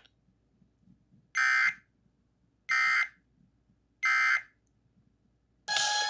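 Emergency Alert System end-of-message signal: three short bursts of harsh digital data screech, evenly spaced with silence between, marking the close of the alert. Music comes in just before the end.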